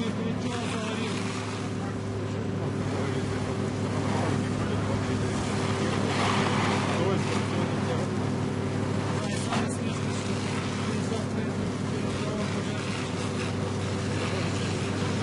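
A fire engine running steadily with an even hum, driving its pump, with the hiss of a fire hose jet spraying water onto a burning building.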